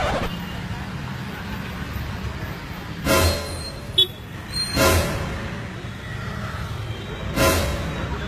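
Street traffic: a steady low engine rumble, broken by three short loud bursts of noise about three, five and seven and a half seconds in, and a sharp click near the middle.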